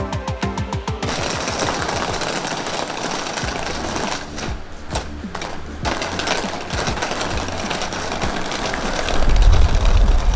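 Suitcase wheels rolling over tiled paving: a continuous rattling clatter with a few brief breaks, after about a second of background music with a quick, steady beat. A deeper rumble joins near the end.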